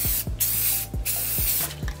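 Aerosol can of Rust-Oleum gloss white spray paint spraying in three short bursts, each a hiss lasting about half a second.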